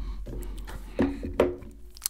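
Light handling noise of small items being moved on a wooden tabletop and an earbud charging case being picked up: soft taps and rubs, with two short vocal sounds around the middle over a low steady hum.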